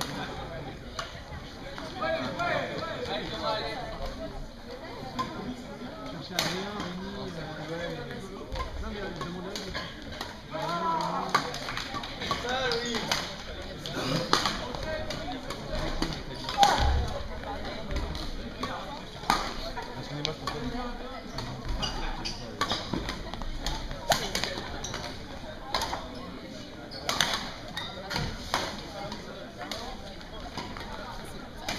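Echoing sports-hall ambience: indistinct background chatter with scattered sharp knocks from badminton rackets striking shuttlecocks.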